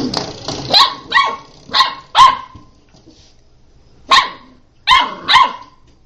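Puppy barking in short, high-pitched barks: four in quick succession, a pause of about a second and a half, then three more.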